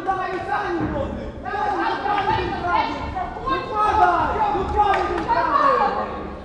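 Several people shouting over one another in a large, echoing hall.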